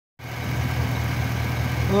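A 2007 Chevy Silverado 1500's engine idling with a steady low drone, running after its timing chain has been replaced.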